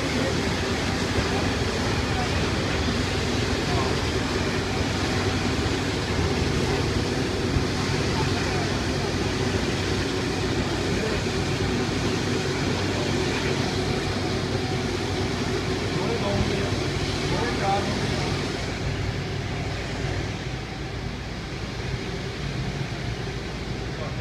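Steady jet engine noise on an airport apron from a taxiing twin-engine airliner, a continuous roar with a low hum, easing slightly near the end.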